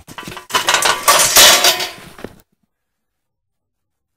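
Wire-mesh cage trap rattling and clinking as a bobcat is let out of it, loudest about a second and a half in, then cut off suddenly.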